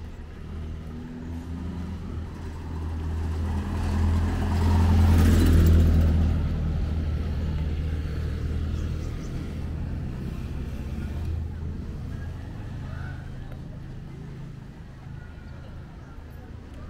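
A passenger jeepney's engine approaching and driving past close by. The engine hum swells to its loudest about five to six seconds in, with a brief rush of tyre noise as it passes, then slowly fades away.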